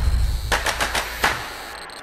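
Sound effects of an animated logo card: a few sharp crackling hits, the first about half a second in, over a low rumble that fades out.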